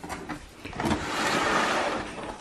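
Cardboard box and the crumpled kraft packing paper inside it rustling and scraping as the box is opened, starting about half a second in and going on steadily.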